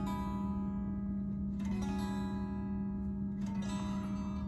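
Telecaster-style electric guitar ringing out slow extended chords, such as an A13 flat five. One chord carries over from just before, a new one is struck about one and a half seconds in, and another comes near the end.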